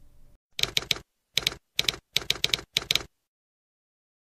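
Typewriter keystroke sound effect: five quick runs of clacking key strikes, ending about three seconds in. Just before the strikes, the faint room tone cuts off abruptly.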